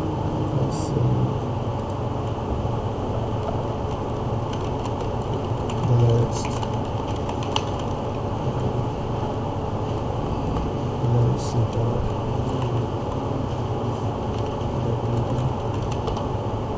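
Computer keyboard keys tapped now and then, a few scattered clicks, over a steady low hum and background noise.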